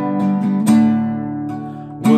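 Nylon-string classical guitar strummed in chords. There are a few quick strokes near the start, then a strong strum about two-thirds of a second in, after which the chord rings and slowly fades.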